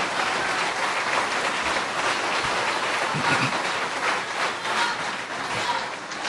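Audience applauding, a steady patter of many hands clapping that eases off toward the end.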